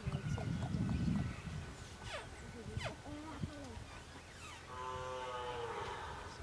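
A young Khillar calf bawls once near the end, a drawn-out call held steady for about a second and a half, while it is restrained for nose piercing. A low rumble runs through the first second.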